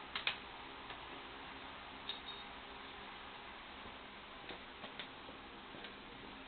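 A few light, scattered clicks and taps over a steady background hiss.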